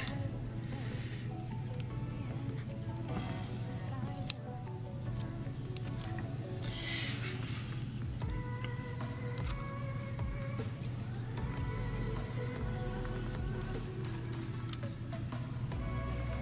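Background music of held, steady notes over a low hum, with a few light clicks from a small screwdriver working on the camera's metal frame, one sharper click about four seconds in.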